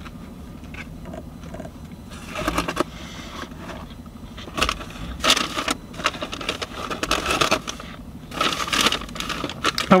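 Food packaging rustling and crinkling in several short bursts, loudest about halfway through and near the end, over a steady low hum inside a car cabin.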